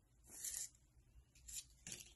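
Faint rustle of a small paper funnel being handled, with a short light tap near the end.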